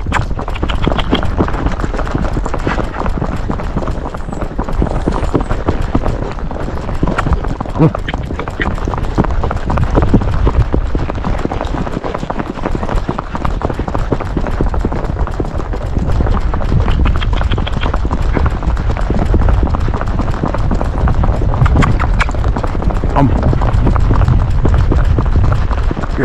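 Hooves of a paso horse beating rapidly and evenly on asphalt in its paso gait, over a steady low rumble.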